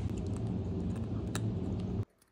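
Dry cat food and a plastic bowl being handled at feeding time: a few light clicks and ticks, one sharper click a little past the middle, over a steady low hum.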